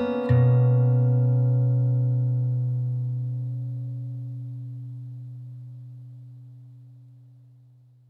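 The song's final chord on acoustic guitar, with a strong low bass note, struck just after the start and left to ring out, fading slowly away to silence near the end.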